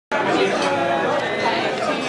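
Indistinct chatter of many overlapping voices in a busy restaurant dining room, steady throughout.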